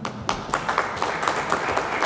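Applause: a group of people clapping steadily.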